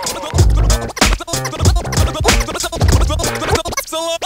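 Hip hop beat with turntable scratching over a repeating drum pattern, in an instrumental stretch without rapping.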